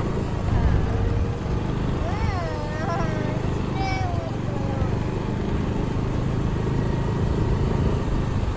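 Steady, loud low rumble of wind and road noise on a moving phone microphone riding alongside a bicycle. A voice calls out briefly about two seconds in and again around four seconds.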